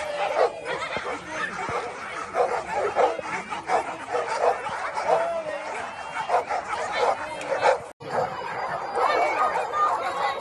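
A big crowd of golden retrievers barking over one another in a continuous din, with human voices mixed in. The sound drops out for an instant about eight seconds in.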